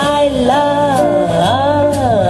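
Live jazz quartet: a female vocalist sings a sliding, swooping melodic line over electric bass, piano and drums with cymbals.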